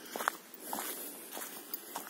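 Footsteps on a dirt forest path strewn with dry fallen leaves, a few separate steps.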